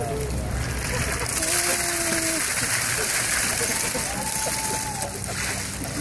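Ice water from a plastic tub splashing down over a seated man and onto the grass, with two long held vocal cries over the splashing.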